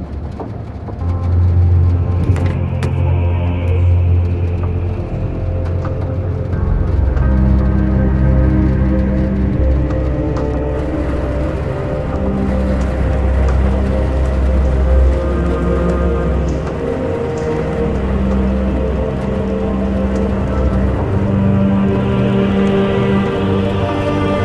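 Background music of sustained low notes and held chords that shift every few seconds.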